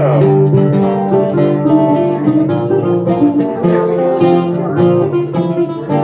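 Live acoustic trio playing a lively dance tune: bouzouki and guitar plucking and strumming under a held recorder melody, without a break.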